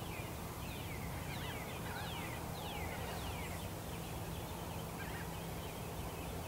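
Songbirds chirping: a run of quick, high notes that each slide downward, thickest in the first few seconds, over a steady low background rumble.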